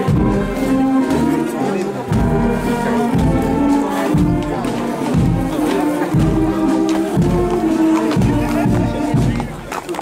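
Brass fanfare band playing a march, with a low drum beat about once a second.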